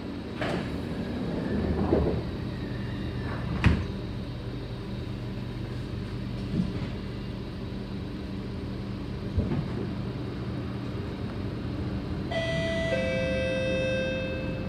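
Kawasaki C751B metro train doors sliding shut, ending in a sharp knock about four seconds in, then the train running with a steady low hum as it pulls away. Near the end a two-note electronic chime sounds, stepping down in pitch.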